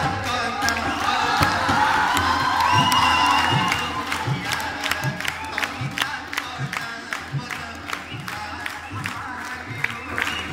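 Live singing into a microphone with tabla accompaniment, the audience cheering over it in the first few seconds. Then the tabla's low bass-drum strokes, bending upward in pitch, keep a steady beat with claps.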